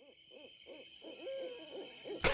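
Faint hooting bird calls: a quick run of short hoots that rise and fall in pitch, about three a second, with one longer held note a little past halfway.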